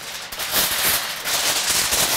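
A large sheet of aluminum foil crinkling and crackling as it is handled and opened out, getting louder about half a second in.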